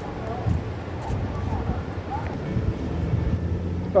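A steady low mechanical hum, stronger in the second half, with faint voices now and then.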